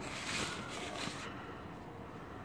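A brief rush of noise that fades after a little over a second.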